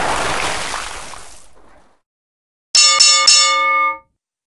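Sound effects of an animated intro: a rushing whoosh that fades away over the first two seconds, then, after a short silence, a bright bell-like chime struck three times in quick succession that cuts off abruptly.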